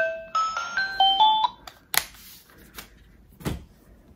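Baby high-contrast sound book playing a short electronic tune of clear beeping notes that step up and down, stopping a little under two seconds in. A sharp click and a dull thump follow as the book is handled.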